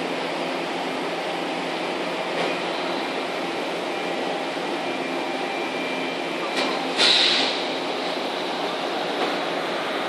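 Steady mechanical drone with a low hum, as from a berthed ship's engines and ventilation heard from its open deck. There is a click about six and a half seconds in, then a brief, louder hiss-like burst.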